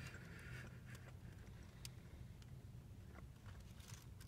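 Near silence inside a parked car: a faint steady low hum with a few soft clicks.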